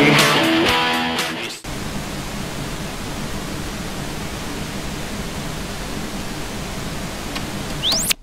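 A guitar rock song playing its last chords, which fade and break off about a second and a half in, giving way to the steady hiss of television static. Near the end a short rising whine sounds and the hiss stops abruptly.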